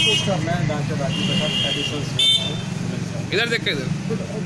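Street traffic with a steady low engine hum and vehicle horns sounding, one held for nearly a second and one short. Indistinct voices run underneath.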